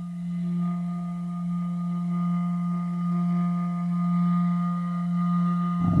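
A single steady low drone tone with fainter ringing overtones above it, swelling slightly in loudness and holding its pitch throughout. Just before the end it gives way to a voice.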